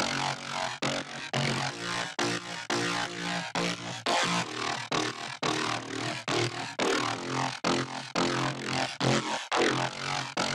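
Electronic dance track playing back from an Ableton Live project, led by a synth bassline of short repeated notes in a steady rhythm, about three a second, under a chord progression.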